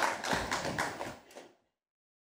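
Light tapping and rustling that fades away, then the sound cuts off to silence about one and a half seconds in.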